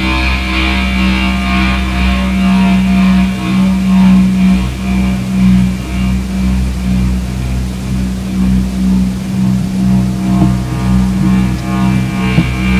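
Live electronic noise music: a loud sustained drone on one low pitch over a rumbling bass, swelling and ebbing slowly, with a high buzzing layer that fades out after the first couple of seconds and returns near the end.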